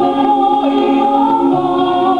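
A group of voices singing a Samoan vii (a sung tribute) together, holding long, slow notes.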